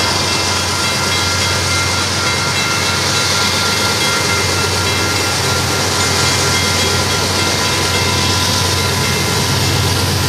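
Two Union Pacific diesel locomotives hauling a coal train pass close by at steady speed. Their engines run with a steady low hum and a thin high whine over the rumble of the wheels on the rails.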